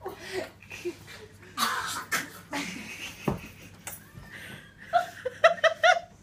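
Laughter in bursts, with breathy, noisy outbreaths about two seconds in and a single sharp knock about halfway; pulsed ha-ha laughter returns near the end.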